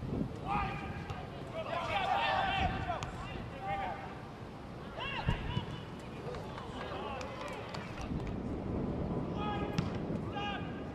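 Soccer players shouting calls to each other across the pitch, in short high-pitched cries, over a steady low rumble of wind on the microphone. A single thump comes about five seconds in.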